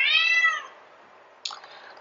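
A domestic cat meows once. The single call lasts under a second and its pitch rises and then falls. A brief faint click follows about a second and a half in.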